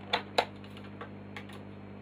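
A few light clicks and taps from handling multimeter test leads and small parts on a workbench, the two loudest in the first half second, over a steady low hum.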